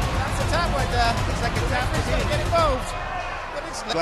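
Dull thuds of bodies hitting a wrestling ring mat, among raised voices, with music underneath.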